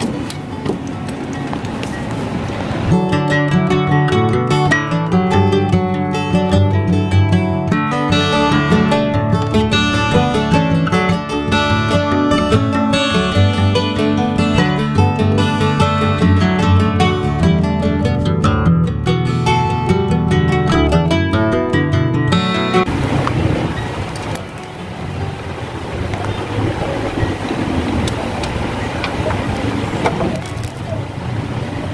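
Background music of plucked, guitar-like notes, starting about three seconds in and stopping about seven seconds before the end. Before and after the music there is only an even noise with no clear events.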